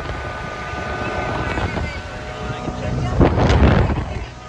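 Motorboat running at speed: a steady engine hum over rushing water, with wind buffeting the microphone, growing louder and rougher near the end.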